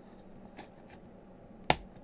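CR1220 coin-cell battery being pressed into its holder on a circuit board: a couple of faint ticks, then one sharp click near the end as it snaps into place.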